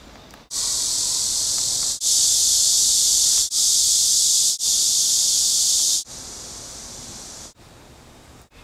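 A loud, high-pitched hiss comes in four back-to-back stretches that start and stop abruptly, from about half a second in to about six seconds. It then drops to a fainter hiss.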